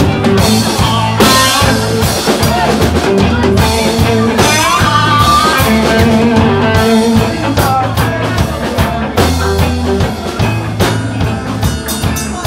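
Reggae band playing live: drum kit, bass and electric guitars over a steady beat.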